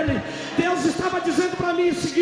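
A man preaching in Portuguese in a loud, raised, high-pitched voice over a church PA system.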